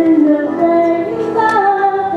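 Female voices singing a slow song over instrumental accompaniment, holding long notes.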